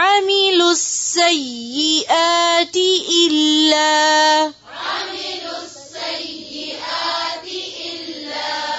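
A woman's voice reciting a verse of the Quran in melodic tajweed style, the pitch bending up and down and holding one long note. At about four and a half seconds it gives way to a softer, hazier recitation.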